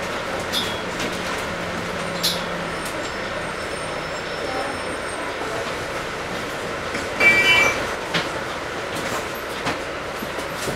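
Inside a Volvo Olympian double-decker bus, the running engine and drivetrain drone with scattered body rattles. A low engine note fades about three seconds in as the bus slows and halts. About seven seconds in comes a brief, loud high-pitched squeal.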